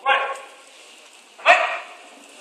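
Two short, loud shouts, one at the start and another about a second and a half later: a referee's barked Japanese commands and the fighters' answering "osu" as a Kyokushin karate bout gets under way.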